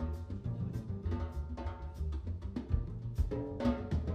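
Live jazz trio playing: upright double bass walking low under a drum kit's steady drum and cymbal strokes, with keyboard chords above.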